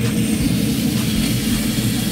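Green Mountain Grill pellet grill running hot with its lid open: a steady low hum and rumble with a faint hiss over it.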